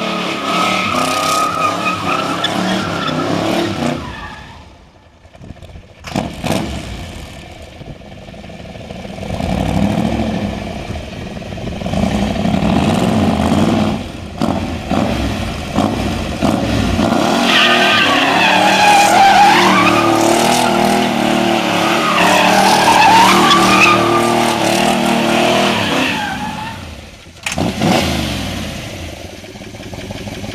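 V8 engine of a Shelby GT500 'Eleanor'-style Mustang revving hard while its rear tyres squeal through burnout donuts. The sound eases off for a few seconds and the engine revs rise and fall. A long, wavering tyre squeal follows, and it drops away near the end to the engine running more quietly.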